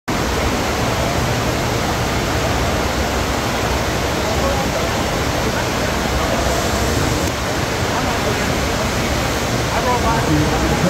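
FlowRider sheet-wave machine running: a thin sheet of water is pumped at speed up the ride surface, making a steady, even rushing noise.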